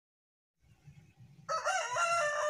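A rooster crowing, a loud drawn-out call that starts about three quarters of the way in after near silence.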